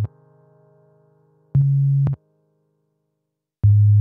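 Sparse electronic music: short, loud, low synth bass tones, each about half a second long and cutting off sharply, with silent gaps between them. A faint chord fades out over the first second and a half, and the next low tone comes in near the end.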